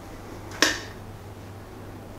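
A single sharp click about half a second in, typical of a wall light switch being flipped, over a faint steady low hum.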